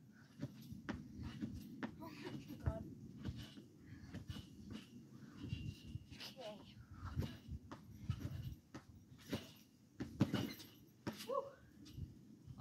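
Repeated bouncing on a backyard trampoline heard from a short distance: a steady series of soft thumps from the jumping mat and creaks from the springs, more than one a second, with a few short squeaky sounds in the second half.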